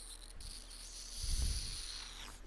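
Crickets chirping in a steady high-pitched trill, with a low rumble a little past the middle as a cheek rubs against a desk microphone.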